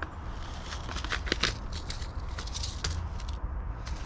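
Paper seed packet crackling and rustling as it is handled, with scattered small clicks and taps, over a steady low rumble.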